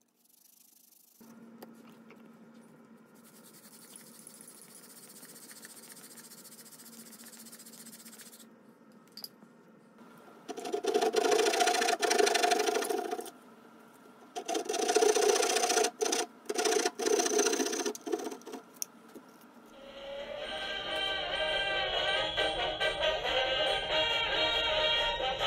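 Small hand saw cutting a notch into a wooden bow drill hearth board, in two runs of rasping strokes. Background music starts near the end.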